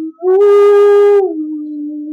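A woman singing unaccompanied, holding long sustained notes at the close of the song. About a third of a second in she jumps to a louder, higher held note for about a second, then drops back to a lower, softer held note.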